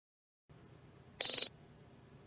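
Trading platform's order-fill alert: one short, high-pitched beep about a second in, signalling that the limit buy order has just been executed.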